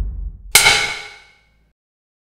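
A low boom dies away, then about half a second in a single sharp metallic clang rings out and fades within about a second: a logo sound effect.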